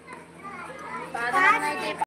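High-pitched voices talking, faint at first and loudest in the second half.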